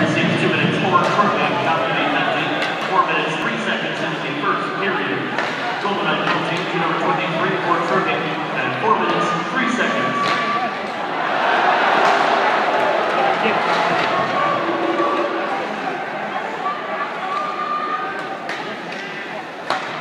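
Spectators in an ice hockey arena, many voices talking and calling out at once in a large, echoing hall, the crowd noise swelling about halfway through. Occasional sharp knocks of sticks, puck or boards cut through.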